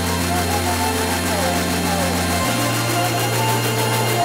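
A UK bass track playing in a DJ mix. Long held sub-bass notes step up in pitch a little past halfway, under a voice in the track.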